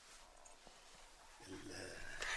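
Near silence with faint room tone, then a low human voice starts about one and a half seconds in.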